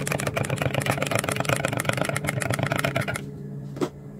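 A spoon stirring a drink in a stainless steel mug, clinking rapidly against the metal sides, stopping a little after three seconds, then one sharp tap near the end. A steady low hum runs underneath.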